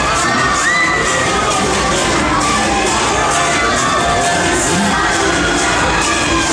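Riders on a swinging, spinning pendulum thrill ride screaming and shouting, with several rising-and-falling cries.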